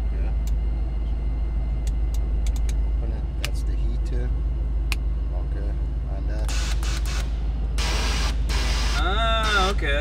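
Dodge Challenger Hellcat's supercharged V8 idling, with hissing bursts from the nitrous purge valve venting the line from about six and a half seconds in, the longest near eight seconds. A voice comes in near the end.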